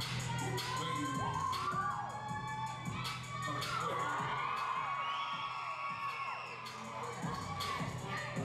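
Theatre audience cheering and screaming in high whoops that rise and fall, many voices overlapping, over hip hop dance music with a steady bass.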